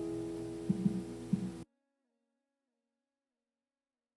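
The last acoustic guitar chord of a song ringing out and fading, with a few soft low thumps about a second in. It cuts off abruptly into silence after about a second and a half.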